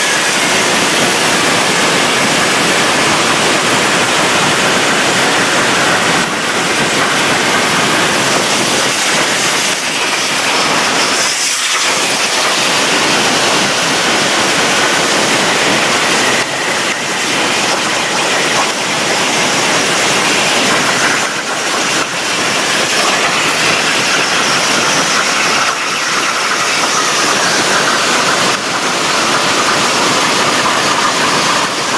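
Plasma cutting torch on a CNC table running a cut through metal plate: a loud, steady hiss of the arc and its compressed-air jet, with a few brief dips along the way.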